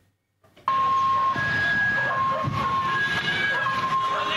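A two-tone siren alternating between a low and a high note, each held for just under a second, starting about two-thirds of a second in over loud street noise.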